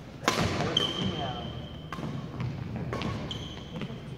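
Badminton play on a hardwood gym floor. A sharp racket strike on the shuttlecock comes about a quarter second in, followed by a few lighter hits and taps. Two drawn-out high shoe squeaks run through the middle and near the end.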